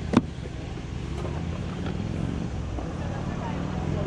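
A sharp knock just after the start as a cardboard board-game box is picked up, then a steady low engine hum from a passing or idling vehicle that grows a little louder toward the end.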